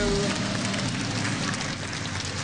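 Studio audience applauding and cheering.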